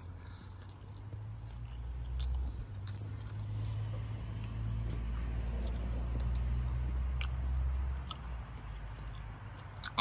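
A person chewing a bite of soft flour-tortilla beef taco, with a low muffled sound of the chewing and a few scattered wet mouth clicks.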